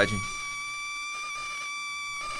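A man's long high-pitched scream, held on one steady pitch.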